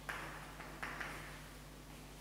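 Chalk on a chalkboard: three short, faint strokes as the last letters of a word are written, over a steady low hum.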